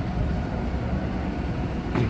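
Steady city street traffic noise, a continuous low rumble of engines and vehicles on a busy avenue.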